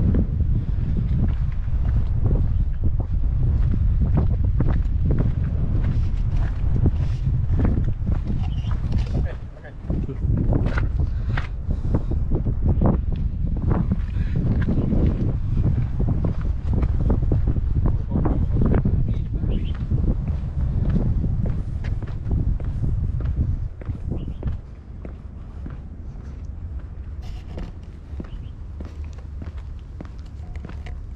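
Footsteps on a paved concrete path, with wind buffeting the microphone as a low rumble; the wind noise drops off about three-quarters of the way through.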